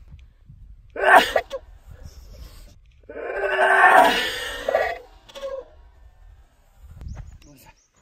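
A man sneezing in a loud, exaggerated, theatrical way: a short, sharp burst about a second in, then a long, drawn-out, voiced sneeze lasting about two seconds.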